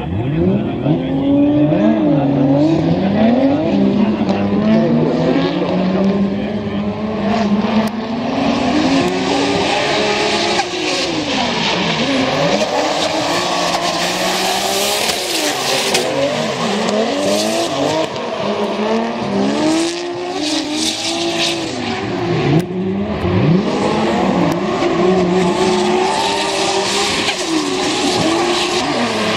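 Two drift cars launch together and run a tandem drift battle. Their engines rev hard, rising and falling in pitch through shifts and throttle work, and the tyres squeal as the cars slide, from about eight seconds in.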